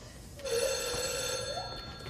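A ringing, bell-like tone starting about half a second in and lasting just over a second, with a lower note that rises at its end.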